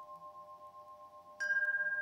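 Meditative background music of ringing chime tones: several steady tones fade slowly, then a higher chime is struck about one and a half seconds in and rings on with a fast shimmer.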